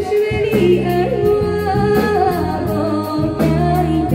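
A woman singing a Taiwanese song into a microphone with a live band backing her, holding long notes with a wavering vibrato.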